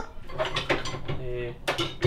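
Metal hand tools clinking and rattling as they are rummaged through in a toolbox drawer.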